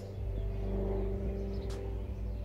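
A steady low hum with a sustained mid-pitched tone, like a held musical drone or a machine hum. A faint click comes near the end.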